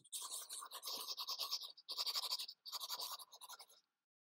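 Chalk scratching on a blackboard as a line of words is written, in three stretches of quick strokes separated by short breaks.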